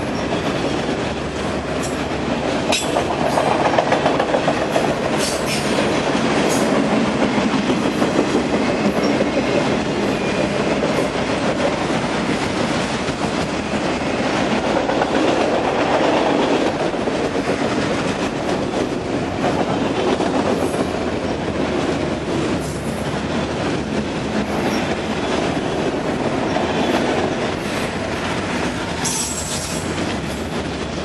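Freight train of auto-rack cars rolling past: a steady rumble and hiss of steel wheels on the rails, broken by a few sharp clicks near the start and again near the end.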